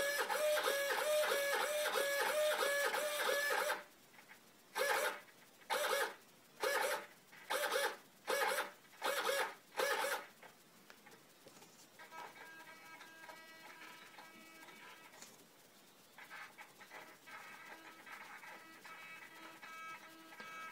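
Turnigy RC servo motor and gears whining as the servo is swept rapidly back and forth for about four seconds. It then makes six short separate moves about a second apart, followed by a faint steady hum.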